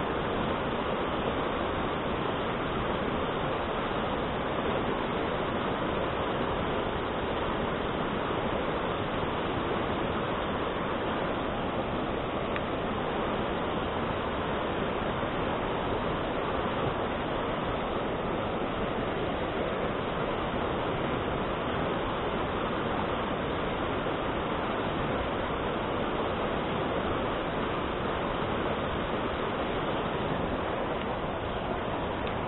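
Mountain stream rapids rushing steadily over boulders, an even, unbroken roar of white water.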